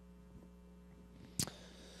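Low, steady electrical mains hum in the room tone, with a single sharp click about one and a half seconds in.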